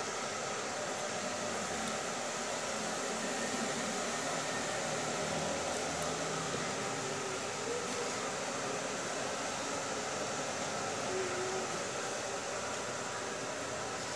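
Steady background noise: an even hiss with a faint low hum, without distinct events.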